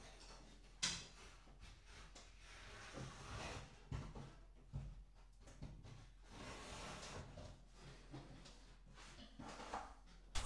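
Faint scraping of a hand tool spreading plaster-based filler along the joint between the wall tiles and the ceiling, with a sharp click about a second in and a few soft knocks, likely the plastic mortar bucket being handled.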